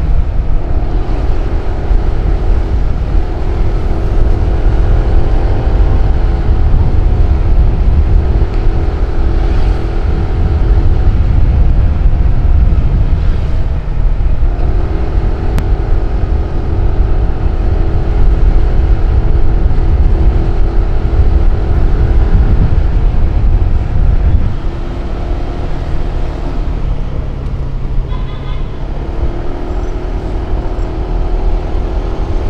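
Motorcycle riding at speed, the engine running at a steady note that shifts in pitch as the speed changes, under heavy wind and road rumble. It eases off and gets a little quieter about three-quarters of the way through.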